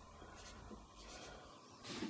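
Faint marker strokes on a whiteboard: a few short strokes, with a brief soft rustle near the end.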